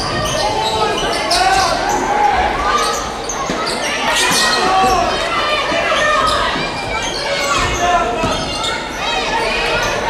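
Game sound of a live basketball game on a hardwood court: the ball thudding as it is dribbled, sneakers squeaking in short sharp chirps, and players and spectators calling out, echoing around a large gym.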